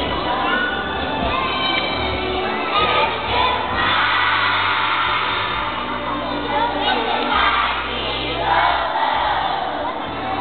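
A crowd of young children singing and shouting together over music with a steady bass line.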